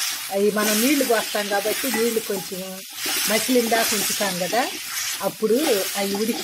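Chopped tomatoes and green chillies sizzling in hot oil in a steel kadai as a wooden spatula stirs them, the hiss swelling with each stroke.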